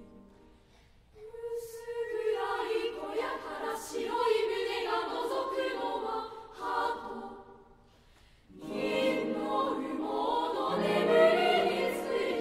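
Junior high school girls' choir singing a women's chorus piece in Japanese, one phrase after another. The singing breaks off briefly about seven and a half seconds in, then comes back in fuller and louder.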